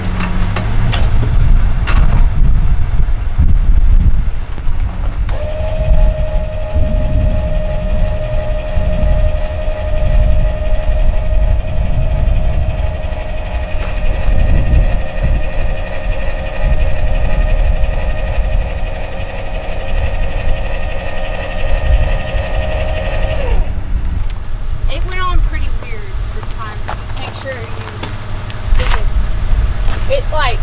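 Travel trailer's electric tongue jack motor running with a steady whine for about eighteen seconds, starting a few seconds in and cutting off abruptly, over a low rumble.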